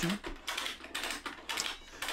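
Ratchet-strap tensioner being cranked, its pawl giving a quick, uneven series of sharp clicks as it pulls the roller of a homemade etching press across the plate.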